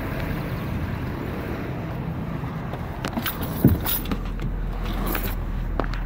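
Someone climbing into a pickup truck's cab: scattered clicks and rustling, then the door shutting with a sharp thump about three and a half seconds in, after which a steady low hum fills the closed cab.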